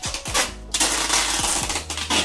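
Rustling and crinkling as goods and cardboard flaps are handled inside a cardboard box being packed by hand, over background music. A dense stretch of rustling lasts about a second, from just before the middle to near the end.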